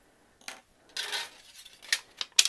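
A few short clinks and rustles as a hobby knife and a thin flattened sheet of aluminum can are handled on a cutting mat. The loudest comes about a second in, with a small click near the end.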